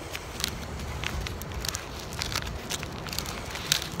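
Light crackling and rustling of paper and cardboard mail packaging being handled, scattered faint clicks over a steady low background rumble.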